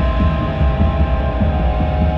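Synthesizer film-score music played from vinyl: a low throbbing bass pulse, about two a second, under sustained high drone tones.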